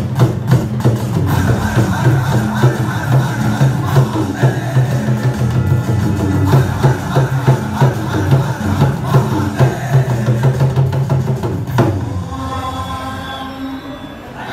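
Tabla played solo: fast, dense strokes on the right-hand drum over the deep bass of the left-hand bayan, ending with one last loud stroke about twelve seconds in.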